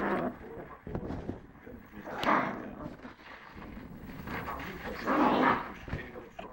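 Lhasa Apso puppy growling and barking in short bursts, the loudest about two seconds in and another near the end.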